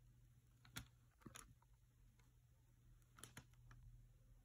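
Near silence with a few faint light clicks, about a second in and again about three seconds in, as a wooden popsicle stick works epoxy resin into metal pendant bezels.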